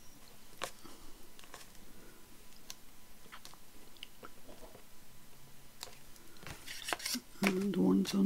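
Small scissors snipping loose thread ends off stitched chiffon ribbon: scattered sharp snips every second or so. A woman's voice is heard briefly near the end.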